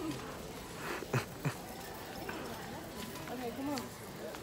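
Low store background: faint, indistinct voices of people in the aisles, with two or three brief, sharp knocks a little over a second in.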